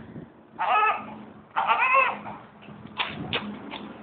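A dog giving two drawn-out, wavering whining cries, the second longer, followed by a few light clicks.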